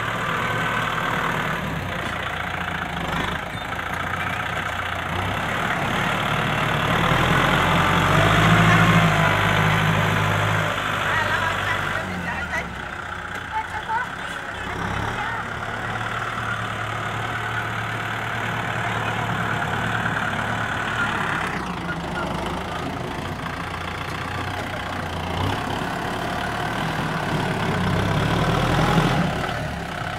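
Kubota M6040 SU tractor's diesel engine running under load as its front blade pushes soil. The engine note shifts as it works and is loudest around eight to ten seconds in.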